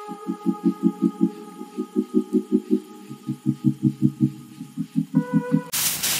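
Background music: a low pulsing beat, about five pulses a second in short runs, under steady held tones, with a change of chord about five seconds in. It cuts off abruptly just before the end.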